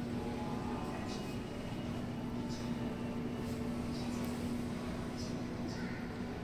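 Steady low electrical hum of an indoor exhibition hall's room tone, with faint indistinct voices and a few small ticks in the background.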